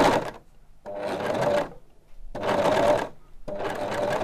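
Overlocker (serger) sewing in short runs, its motor starting and stopping about three times with brief pauses between. It is stitching over the start of the seam to overlap the stitching by a couple of centimetres and close the round edge.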